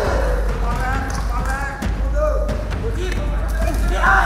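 Voices shouting over a kickboxing bout, with a few sharp thuds of gloved strikes landing, the clearest a little before and after the halfway point.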